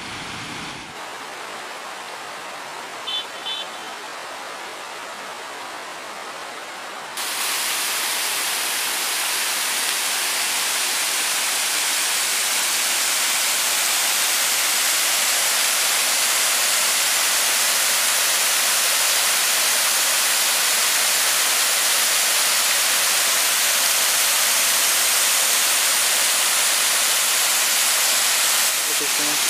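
Water spilling over a dam's curved concrete overflow weirs and falling in thin sheets into the pool below: a steady rushing hiss. About seven seconds in it steps up to a louder, brighter rush of the falling water heard close. A short high chirp sounds once about three seconds in.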